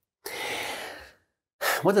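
A man's long, audible breath, a sigh of about a second that fades away, followed near the end by the first word of speech.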